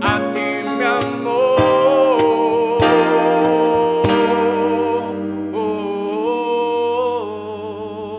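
A male voice sings long held notes of a slow Latin pop ballad, accompanied by keyboard and electric guitar. The notes are sustained with vibrato, one held for several seconds, and the music eases slightly in loudness near the end.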